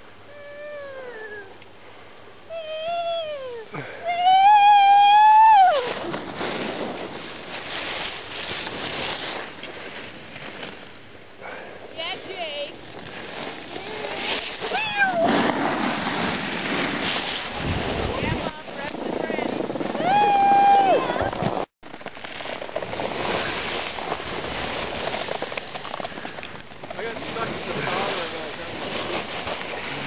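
Skis running and scraping over packed snow with a steady rushing noise of wind on the moving microphone, broken by several high-pitched yelled calls from the skiers. The loudest call comes about four seconds in, and others follow a few times later.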